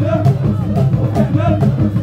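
A group of men chanting a traditional song, with percussion keeping a steady beat.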